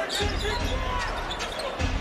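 Basketball arena ambience during live play: steady crowd noise with a low rumble, under the on-court sounds of the game.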